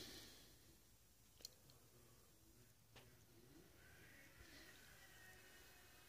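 Near silence: room tone, with two faint clicks about a second and a half apart.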